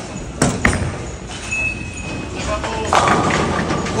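A bowling ball lands on the lane with two quick thuds, rolls, and clatters into the pins about three seconds later.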